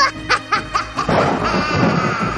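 Short snickering laughs over background music, then about a second in a hissing, shimmering swell with held tones.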